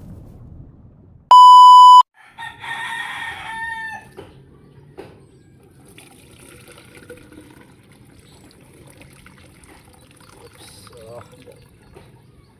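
A loud, steady electronic beep lasting under a second, then a rooster crowing for about a second and a half. After that, faint pouring of a milky liquid from a metal pot through a mesh strainer into a plastic pitcher, with small knocks.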